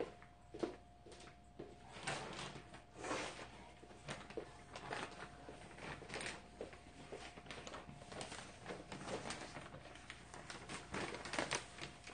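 Faint scattered clicks, knocks and rustles of objects being handled, over a faint steady hum.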